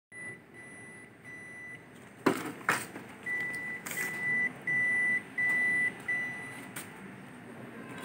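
A Ricoh MP 8001-series office copier beeping repeatedly: one high tone in half-second beeps, about 0.7 s apart, with a pause after the first three. Two sharp knocks come about two and a half seconds in.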